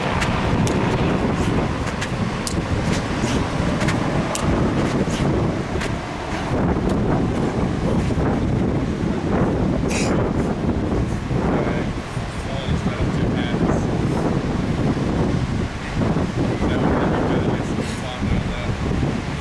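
Wind buffeting the camera microphone, a steady low rumble, with a few light taps in the first few seconds.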